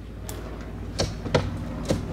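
A few sharp, irregular knocks over a low steady hum, from roofing work on the stripped roof.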